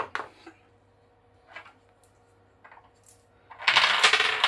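Rifle bullets and a plastic bullet box being handled on a desk: a few light plastic clicks, then a louder metallic clatter of bullets rattling together near the end.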